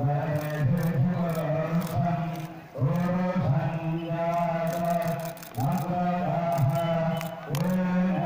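A man chanting Hindu mantras in long, steady, held phrases, pausing briefly for breath about every two to three seconds. The chanting accompanies the immersion of a person's ashes in a river.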